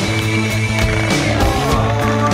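Music with a steady drum beat and sustained pitched tones.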